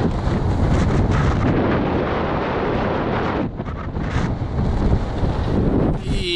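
Strong wind buffeting the microphone: loud, gusting noise that eases briefly about three and a half seconds in.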